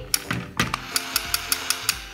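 Battery-driven plastic toy gear set running, its meshing plastic gear teeth clicking in a fast regular rattle of about five clicks a second, with background music underneath.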